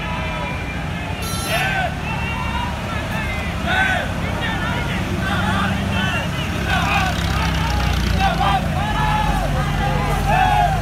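Engines of slow-moving military vehicles, an army jeep and then a flower-draped army truck, passing with a steady low rumble that grows in the second half as the truck draws near. Many people's voices sound over it.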